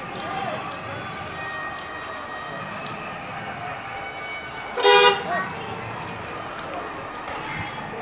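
A vehicle horn gives one short toot about five seconds in, over steady road and traffic noise from driving along a town street.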